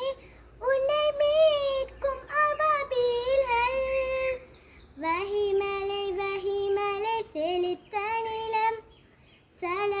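A young girl singing a qaseeda (Islamic devotional song) solo, without accompaniment, in long ornamented phrases. She pauses briefly for breath about half a second in, about four and a half seconds in, and near the end. The phrases after the middle pause sit lower in pitch.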